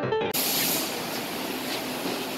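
Piano music cuts off a moment in and gives way to a steady, even hiss of factory-floor background noise.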